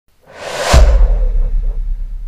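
A whoosh sound effect swells up and peaks just under a second in with a deep bass boom, which then fades away slowly.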